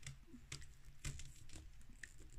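A few faint, light clicks of hard plastic being handled: a stiff plastic action-figure hand being worked around a small plastic sword.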